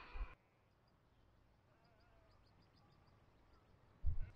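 Near silence: faint outdoor quiet, with a faint wavering call and a short run of faint rapid high ticks about midway.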